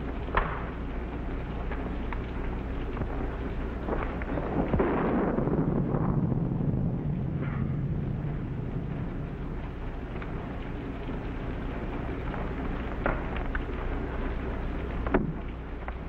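Steady heavy rain with a low roll of thunder that swells about five seconds in and fades away. A sharp knock comes near the start and another near the end.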